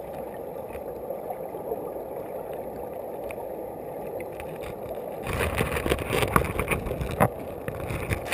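River water flowing over a gravel bed, heard underwater as a steady muffled rush. From about five seconds in it grows louder, with a run of sharp clicks and knocks.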